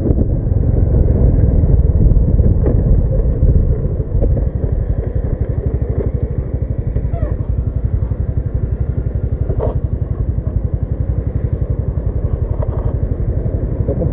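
Small motor scooter engine heard from the rider's helmet, running while riding with a steady low rush for the first few seconds. From about four seconds in it eases off to a quicker, even putter as the scooter slows.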